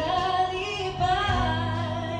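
A woman singing a Cebuano gospel song into a microphone, with held keyboard chords underneath.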